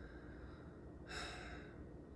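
A person's short audible breath, a soft sigh or in-breath about a second in, over faint room tone.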